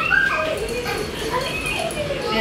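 A small poodle whining and yipping in short high-pitched calls, with people talking over it.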